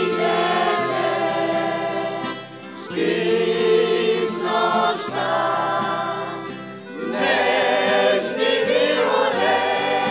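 Mixed amateur vocal group singing a Bulgarian old urban song in close harmony, over acoustic guitar and accordion accompaniment. The singing comes in three phrases, with short breaks about two and a half seconds in and again about seven seconds in.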